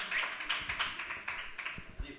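Audience applause, thinning out and fading away.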